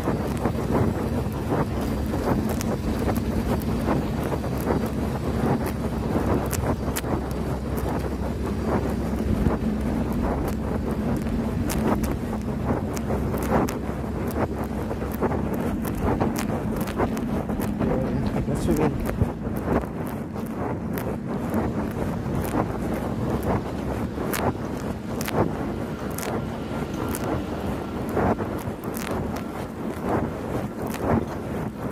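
Wind buffeting the microphone of a phone taped to the chest of a rider on a moving mountain bike, over a steady rumble of tyres on pavement. Many short clicks and rattles come through throughout, more of them in the second half.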